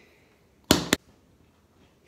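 A plastic tube of body cream set down on a tiled countertop: two quick knocks close together, about two-thirds of a second in.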